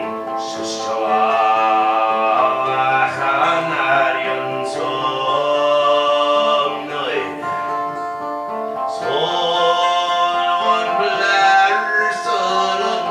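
A man's overtone throat singing, sounding two notes at once: a low sustained drone with a bright, whistling overtone melody above it. It is accompanied by a strummed guitar.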